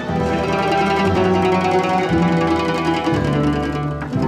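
Plucked-string orchestra of mandolins and guitars playing a rhythmic passage together, with a double bass underneath.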